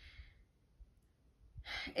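A woman sighs out softly, pauses near-silently, then takes a breath in near the end as she starts to speak again.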